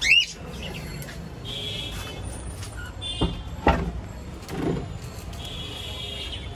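A few sharp knocks of wood on wood as the wooden hutch boards are handled, over a steady low background rumble. A short high squeak comes right at the start.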